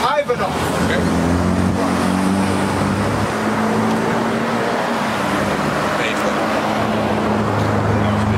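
Road traffic with a nearby motor vehicle's engine: a steady low drone that sets in about half a second in and holds.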